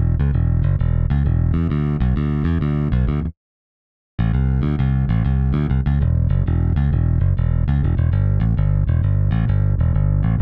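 UJAM Virtual Bassist Rowdy, a software electric bass, playing a repeating preset bass pattern with its melodic feature on. The playback cuts out to silence for just under a second about three seconds in, then resumes.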